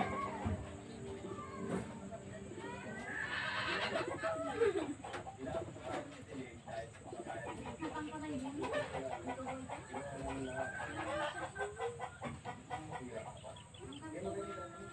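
Chickens clucking and other birds calling on and off.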